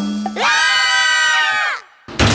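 A cartoon T-Rex's roar, voiced as one long shout that falls away in pitch at the end.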